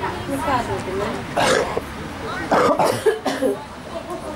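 Voices of people close to the microphone, with two loud, rough throat sounds, one about a second and a half in and a longer one about a second later, ending with a sharp click.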